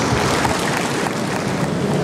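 Audience applauding: a steady wash of many hands clapping.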